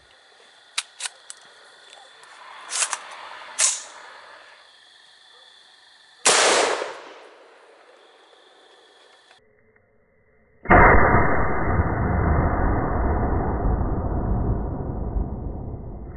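A 5.56 AR-15 pistol fired: a sharp report about six seconds in that dies away over about a second. A few seconds later comes a loud shot heard slowed down, a sudden boom that stretches into a rumble fading over about five seconds. Light clicks and faint steady high tones come before.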